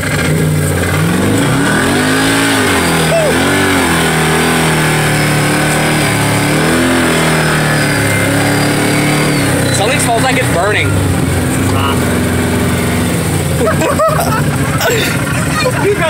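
Can-Am Maverick 1000R side-by-side's V-twin engine heard from the cab while under way. Its pitch rises and falls several times in the first seven seconds, then holds steady, with a faint high whine over it for a few seconds in the middle.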